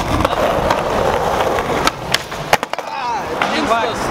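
Skateboard wheels rolling on rough asphalt, then several sharp clacks of the board popping and hitting the ground about two seconds in, after which the rolling stops.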